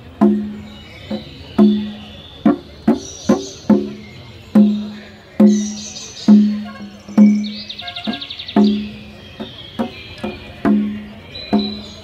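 A drum struck in a slow, steady beat, roughly one stroke a second with some quicker pairs, each stroke ringing with a low pitched tone that dies away. High chirps and a short trill sound between the strokes.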